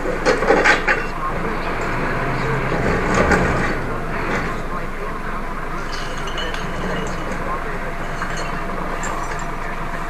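A garbage truck runs steadily while it is loaded. Its hum is deeper for the first few seconds, then eases, and a few light clinks of rubbish or bins come around the middle.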